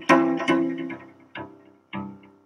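A cello playing a slow line of single notes, about four in two seconds, each starting sharply and then fading away.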